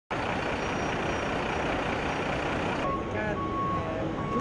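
Loud, steady noise of a large vehicle running, which cuts off abruptly about three seconds in. Then an electronic warning beep repeats, each beep under half a second long, over people's voices.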